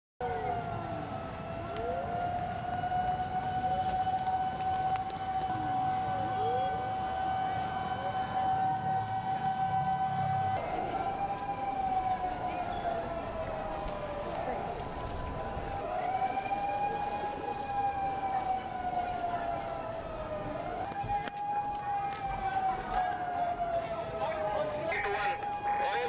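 Sirens sounding for an evacuation alarm. One holds a long steady tone, then rises and falls in slow sweeps of several seconds. A second siren wails in quicker arcs beneath it during the first few seconds.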